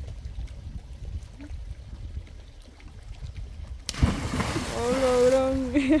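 A person in a life vest jumping off a wooden dock and splashing into lake water about four seconds in, a sudden loud splash over a steady low rumble. A long held cry follows the splash, turning into laughter near the end.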